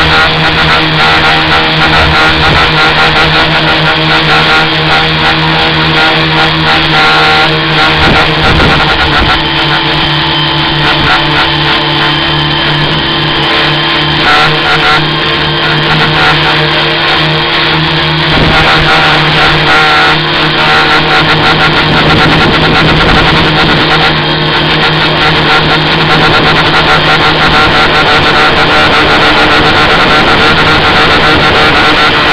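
Tricopter's electric motors and propellers running steadily in flight, a loud constant buzzing drone picked up by the onboard camera's built-in microphone.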